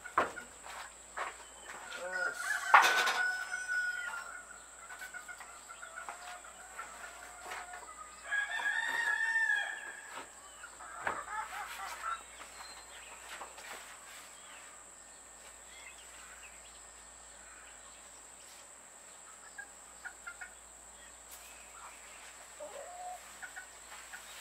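Chickens calling, with a rooster crowing once for about a second and a half, about eight seconds in. A sharp knock about three seconds in is the loudest single sound.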